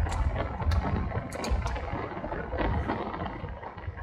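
Steady low rumble of road and wind noise inside a moving car, with a few short clicks.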